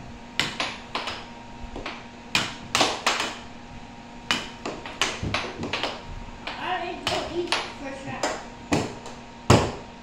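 Air hockey game: the plastic puck and mallets clack sharply against each other and the table's rails, about a dozen knocks at an irregular pace, the loudest near the end.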